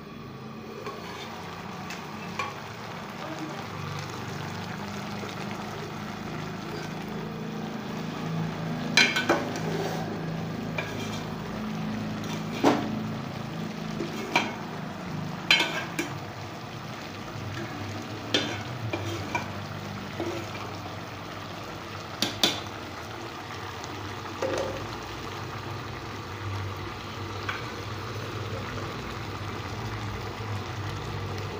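Potato, cauliflower and pea curry sizzling steadily in an aluminium pot while a metal ladle stirs it. The ladle strikes the pot with sharp clinks about a dozen times, the loudest in the middle of the stretch.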